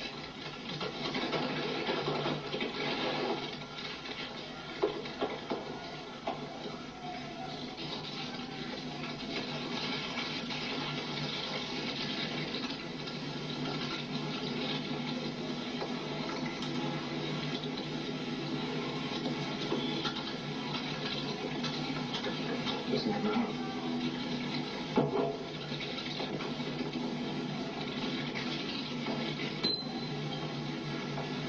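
Steady, noisy soundtrack of a video playing back through computer speakers, with a low hum and a few faint knocks.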